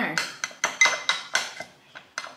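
Metal spoon clinking against glass while scooping strawberry sauce, a quick run of ringing taps about four a second.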